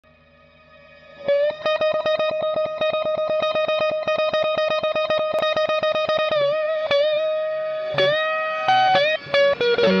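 Overdriven electric guitar (Stratocaster-style, through a modelled Marshall JTM45/100 amp) rapidly picking one bent note over and over, about seven or eight picks a second, starting about a second in. Near the middle the held note wavers, then it breaks into single notes with bends and pitch glides.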